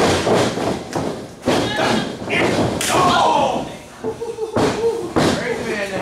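Wrestlers' bodies hitting the ring mat: several heavy thuds and slams in a row, with voices yelling over them.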